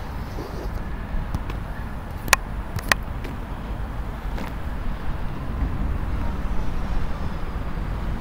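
Steady low outdoor rumble of nearby road traffic, with two sharp clicks a little over two and about three seconds in.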